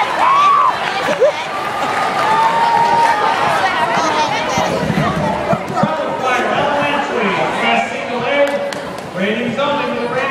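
A crowd of teenagers talking at once, many overlapping voices close by with no single speaker clear. A brief knock about a second in.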